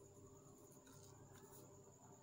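Faint scratching of a pencil tracing letters on workbook paper, a few short strokes about a second in, over near-silent room tone with a faint steady high whine.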